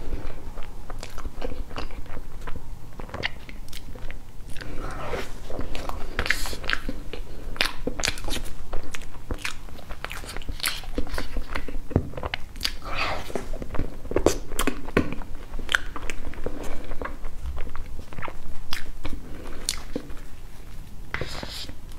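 Close-miked mouth sounds of eating soft cream cake: wet chewing and lip smacks with many sharp clicks throughout. A fork scrapes cake from a foil tray.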